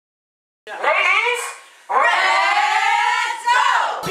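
Two long, high-pitched whoops from women's voices, the first starting about a second in and the second lasting about two seconds, each rising and then falling in pitch.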